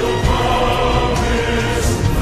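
Slowed-down film-song music: a choir singing sustained notes over an orchestral accompaniment, pitched low and drawn out by the slowing.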